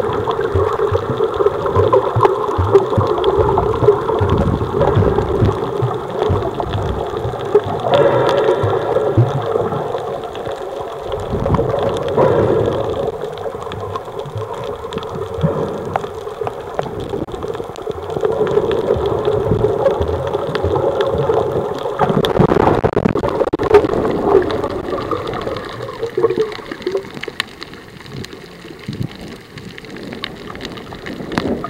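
Muffled underwater water noise picked up by a submerged camera, with gurgling that swells and fades irregularly and eases near the end.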